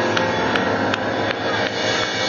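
Jazz drum kit played with little pitched accompaniment: a run of quick, evenly spaced cymbal and drum strokes over a dense wash of cymbal noise, before the band's held chords come back in.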